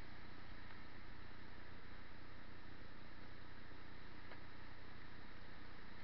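Steady rush of water pouring over a dam spillway: an even, unbroken hiss that holds one level throughout.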